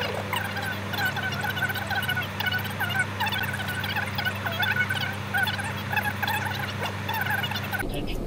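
A chorus of many animal calls at once: a dense chatter of short, wavering calls over a steady low hum. It cuts off suddenly near the end.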